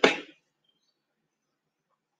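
A single short cough right at the start, lasting about a third of a second.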